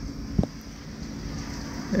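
A short pause with low, steady background rumble and a single short knock about half a second in.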